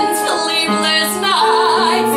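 A woman sings a song into a microphone, accompanied by piano, live. In the second half she holds a note with vibrato.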